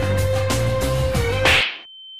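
Background music with a held note, broken off about one and a half seconds in by a sharp whip-crack sound effect. The music cuts out and a single steady high beep tone starts.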